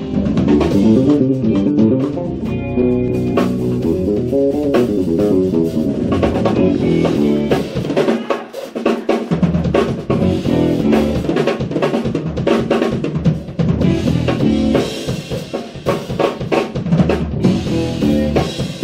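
Live jazz-fusion band playing: drum kit driving under two electric basses and electric guitar, with fast, busy melodic lines. The low end drops out briefly about halfway through.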